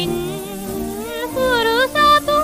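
Vintage Japanese popular song recording, a tango number: a woman singing sustained high notes with wide vibrato over instrumental accompaniment.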